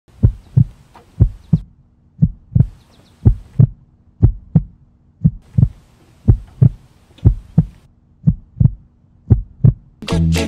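A slow, steady heartbeat: ten deep lub-dub double thumps, about one a second.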